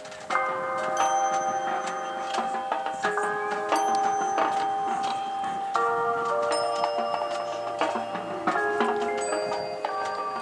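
A marching band and its front ensemble playing: sustained chords that change every second or two, with struck, ringing notes sounding over them.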